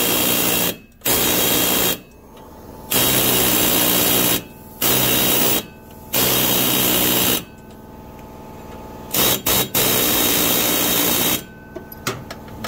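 Pneumatic air hammer with a punch bit hammering up against the underside of a stuck electric PTO clutch on a Toro TimeCutter Z4220 zero-turn mower. It goes in about six loud bursts of one to two seconds with short pauses, and a few quick blips near the end. The vibration is driving penetrating oil down the shaft to free the seized clutch.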